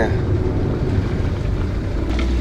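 Steady engine and road noise heard inside the cabin of a Daihatsu Hijet Cargo kei van as it drives.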